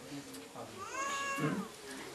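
A single short, high-pitched call about a second in, rising and then falling in pitch, heard faintly under the pause in speech.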